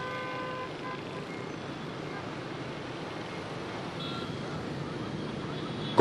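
Steady, even background noise, with a faint held tone during the first second and another brief faint tone about four seconds in.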